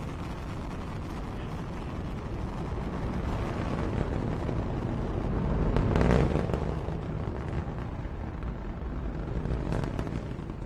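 Long March 5 rocket engines during ascent: a deep, steady rumbling roar that swells to its loudest about six seconds in, then eases off.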